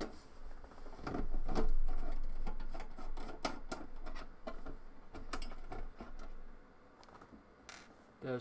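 T10 Torx screwdriver backing screws out of a computer case's sheet-steel drive bracket, with a run of irregular clicks and metallic rattles as the screws and bracket are handled. It is loudest about one to three seconds in.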